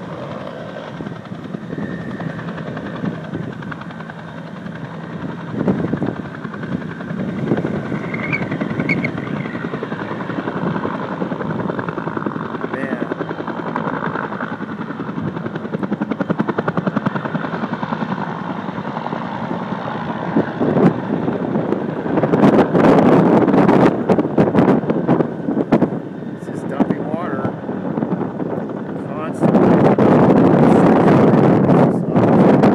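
A firefighting helicopter with a slung water bucket, its rotor chopping steadily, heard through strong wind on the microphone. The wind buffeting turns loud in gusts about two-thirds of the way through and again near the end.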